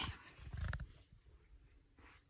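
A brief rustle and a low rumble of handling noise as a phone camera is pushed through sheer fabric curtains, then it falls quiet.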